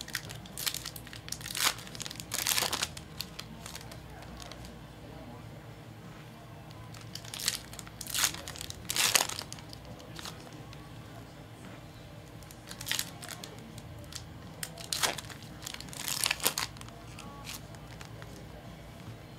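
Foil trading-card packs being torn open and their wrappers crinkled by hand, in three bouts of sharp tearing and crackling with quieter handling between.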